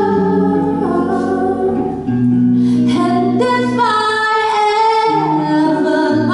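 A teenage female jazz vocalist sings long held notes, some sliding down in pitch, over electric guitar accompaniment.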